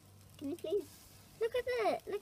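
A child's high-pitched voice: a short vocal sound about half a second in, then a louder one near the end whose pitch falls away.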